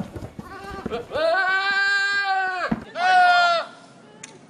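Scream sound effect: a long scream held at a steady pitch for about a second and a half, starting about a second in, then a second, shorter scream near the end.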